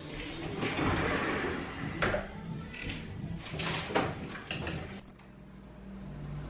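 A few short scrapes and knocks, about a second or two apart, from objects being shifted and handled against a wall, dropping to quieter room sound near the end.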